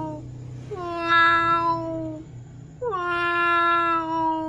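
Domestic cat meowing in long, drawn-out calls: one trailing off just after the start, a second lasting about a second and a half, and a third beginning near the end. Each call dips slightly in pitch at its onset and then holds level.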